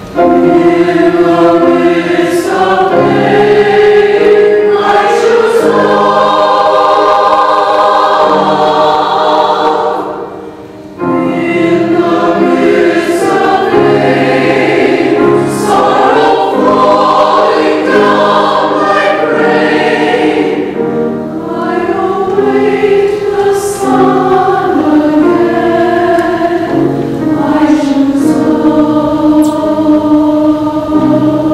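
Mixed choir of men's and women's voices singing an anthem in harmony, with sustained chords. The sound briefly falls away about ten seconds in, and the full choir comes back in together a second later.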